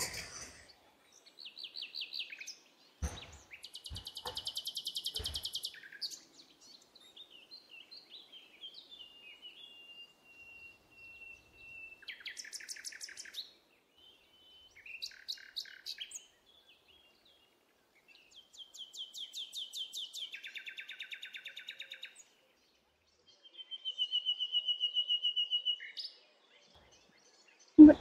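Small birds chirping and trilling in short bursts of a second or two, with a long thin whistled note about ten seconds in. A few faint knocks come in the first few seconds.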